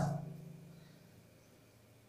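The tail of a man's voice dying away in a small tiled room, with a faint low hum fading over the first second, then near silence: room tone.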